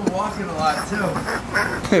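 Men's voices laughing and talking.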